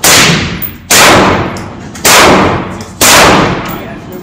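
Four single shots from a 5.56 AR-style rifle, fired about a second apart, each echoing off the walls of an indoor shooting range.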